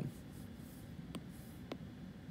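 Faint Apple Pencil strokes on an iPad Pro screen, with soft scratchy swipes followed by two light plastic taps in the second half.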